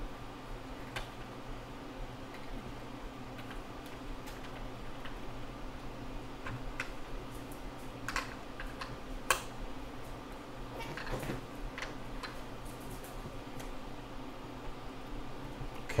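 Scattered light clicks and creaks of hands tightening the plastic mount of a ParaZero SafeAir parachute unit on a DJI Phantom 4 to take up its play, over a steady low hum. One sharper click comes a little past halfway.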